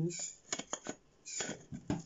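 Handling noise: a few short clicks and knocks as a hard egg-shaped item is turned in the hand and set down on a metal tin lid, the last knock the loudest.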